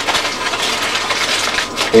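Aluminum foil crinkling and rustling as it is wrapped around a small plastic-cased RF signal source.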